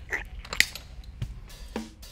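A few sharp metal clicks and taps from needle-nose pliers worked against a bare Honda H23 engine, the loudest about half a second in.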